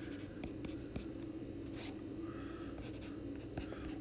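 Stylus writing on a tablet: quiet scratches and small ticks from the pen strokes, over a faint steady hum.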